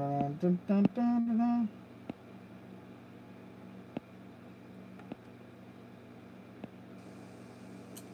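A man humming a few held notes for about the first second and a half, then quiet room tone with a steady low hum and a few faint clicks.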